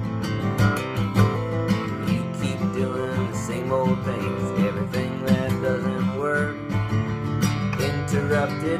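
Steel-string acoustic guitar strummed in a steady rhythm, with a man's voice singing over it at times.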